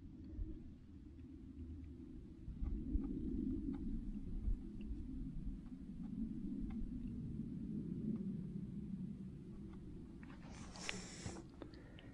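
Low, fluctuating rumble of wind buffeting the microphone, with a few faint soft ticks and a brief hiss near the end.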